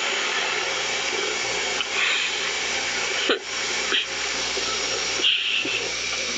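Small handheld gas torch with its flame lit, hissing steadily while silver earrings are soldered, with a brief dip in the hiss about three seconds in and again near five seconds.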